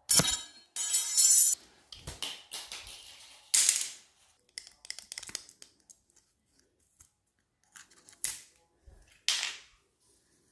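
A laptop blower fan being taken apart by hand and with needle-nose pliers: scattered clicks, scrapes and snaps of its plastic and metal parts. There is a loud rasping scrape about a second in and sharp bursts near four seconds and near the end.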